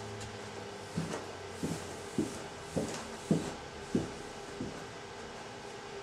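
Footsteps going down a carpeted staircase: about seven heavy footfalls at a steady pace, a little under two a second.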